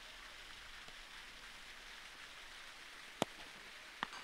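A single sharp thud of a football being struck about three seconds in, over a steady faint outdoor hiss.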